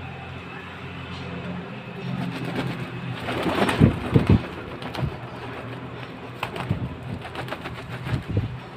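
Domestic pigeon cooing, with a few loud thumps about four seconds in and a quick run of clicks near the end.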